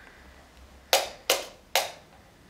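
Three sharp hand slaps or claps in quick succession, a little under half a second apart, each with a short ring-out in a small room.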